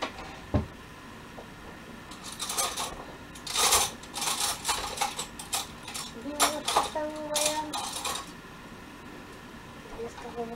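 Kitchen clatter: dishes and utensils knocking and clinking on a counter as ingredients are gathered. The clatter comes in clusters about two to five seconds in and again around six to eight seconds.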